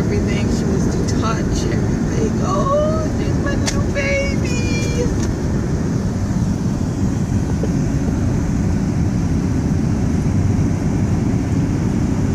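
Steady road and engine noise inside a moving car's cabin, a constant low rumble. A few brief voice sounds come through it in the first few seconds.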